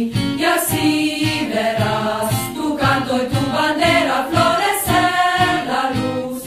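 A group of voices singing a song in chorus over music with a steady beat.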